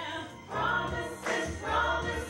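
A woman singing a gospel song into a microphone in phrases, over instrumental backing with a steady low bass.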